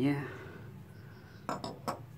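A few light knocks and clinks about one and a half seconds in, as the disassembled carburetor body and its metal parts are handled and set down beside a stainless steel bowl.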